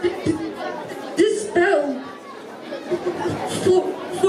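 Speech only: people talking, with background chatter.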